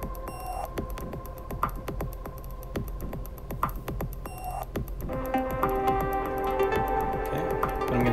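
Electronic drum-machine beat from the Playbeat 3 plugin, short percussive hits repeating in a pattern. Sustained synth notes join in about five seconds in.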